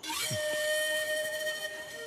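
A sudden hissing swell with several steady held tones that fades after about a second and a half, a dramatic sound-effect sting on the film soundtrack.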